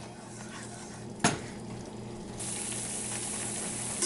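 Masala paste frying in a pan with a light sizzle as it is stirred with a wooden spoon, which knocks once against the pan about a second in. From about halfway the sizzle turns brighter and steady.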